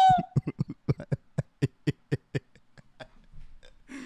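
A sample on a software sampler retriggering in a rapid stutter: a string of short clipped blips, about eight a second at first, slowing and fading away after about two and a half seconds.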